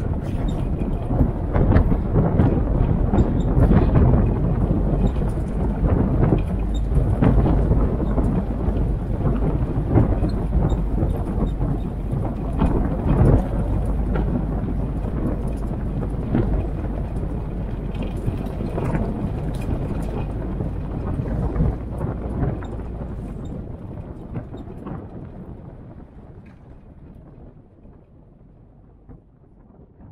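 Military-style jeep driving along a dirt track: engine noise mixed with wind buffeting the microphone, fading out over the last several seconds.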